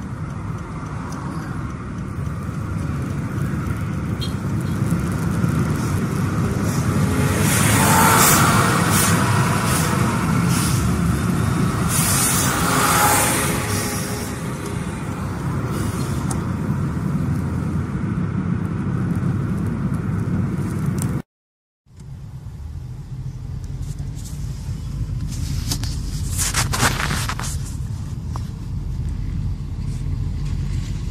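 Steady road and engine noise heard from inside a moving car in city traffic, rising in two louder swells of traffic sound. The sound cuts out completely for about a second roughly two-thirds of the way through, then the same car noise resumes.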